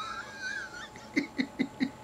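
A man laughing: a high, wavering held laugh for about the first second, then four short, evenly spaced bursts of laughter.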